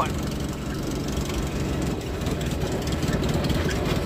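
Small aircraft's piston engine and propeller running steadily at low idle rpm.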